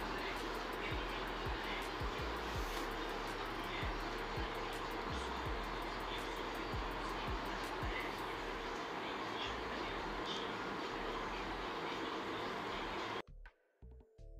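A steady background hum and hiss with faint scattered ticks, cut off abruptly about a second before the end, where a short run of synthesized music notes begins.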